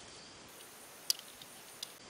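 Faint steady trilling of crickets, with two sharp clicks, one about a second in and one near the end.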